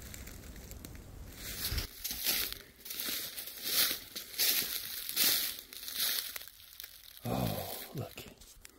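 Footsteps crunching through dry leaf litter, about one step every three-quarters of a second, stopping after about six and a half seconds. A short voice sound follows near the end.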